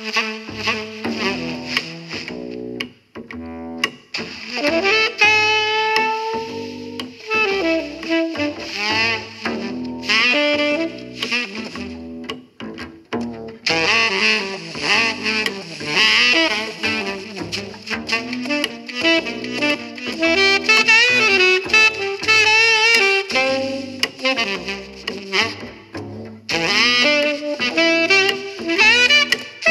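Saxophone-led jazz with a double bass line, played back through a vintage Altec horn loudspeaker system fitted with a pair of Altec 902-8A compression drivers under test.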